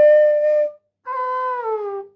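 Bamboo transverse flute (bansuri) playing two short phrases: a held note at the start, then after a brief break a lower note that slides down in pitch.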